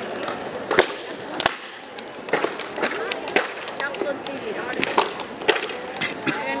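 Shorinji Kempo sparring: a run of sharp slaps and thuds as punches and kicks land on padded chest protectors, about nine hits in quick, irregular succession, some in close pairs.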